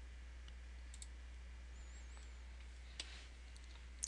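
A few faint computer mouse clicks, the clearest about three seconds in, over a steady low electrical hum.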